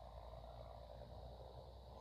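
Near silence: faint, steady outdoor background with a low rumble.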